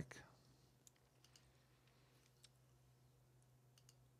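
Near silence: room tone with a low steady hum and about half a dozen faint, scattered computer mouse clicks.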